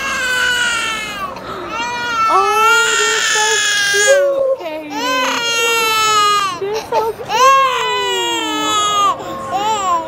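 Toddler crying hard right after having his ears pierced: a run of about five long, high wails with short catches of breath between them.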